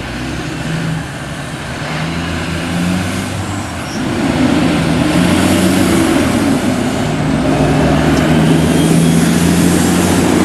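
Road traffic at an intersection, with a heavy truck's engine running close by and growing louder about four seconds in.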